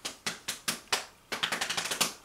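Improvised drumming on a tabletop: sharp strikes about four a second, breaking into a quick roll of taps in the second half.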